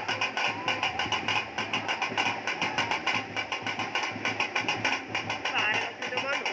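Fast, steady drumming: sharp percussive strokes several times a second, with voices mixed in.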